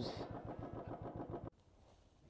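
Royal Enfield Bullet 350's single-cylinder engine idling with an even, rapid thump, stopping abruptly about one and a half seconds in.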